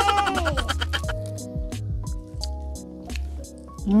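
Background music with soft, held notes, over faint irregular clicks and squishes of food being picked up by hand.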